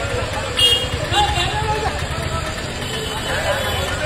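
Street noise at a crowded roadside: people talking and calling out over the steady low rumble of vehicle engines and traffic.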